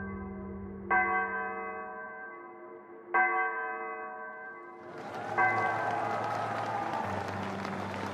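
A deep, church-like bell tolled twice, each stroke ringing out and slowly fading, as a title sting. About five seconds in, a steady wash of noise rises under it.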